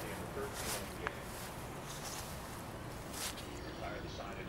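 Lull in a baseball game broadcast: faint background crowd and voices over a steady low rumble, with a couple of short clicks.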